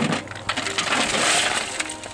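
Fired bricks clattering and clinking against one another, as when they are handled and stacked, in a dense run of sharp knocks that starts suddenly.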